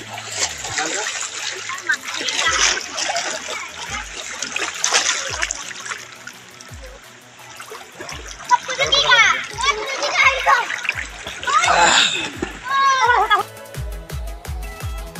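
Water splashing and sloshing as people wade and swim in a river, with shouting voices in the second half. A faint music beat runs underneath.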